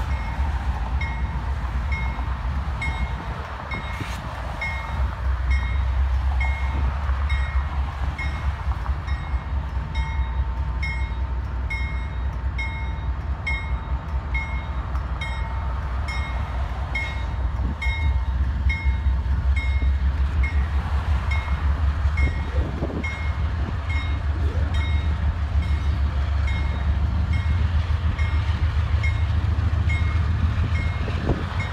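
Lead diesel locomotives of a six-unit freight train (Union Pacific, CSX and KCS units) running with a deep, pulsing rumble that gets louder a little past halfway. A regular faint high ding, about one and a half a second, sounds over it.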